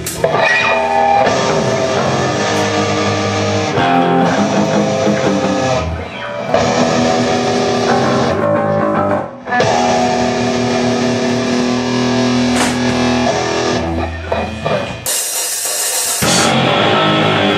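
Hardcore punk band playing live: distorted electric guitar, bass and drums, with brief stops about six and nine seconds in.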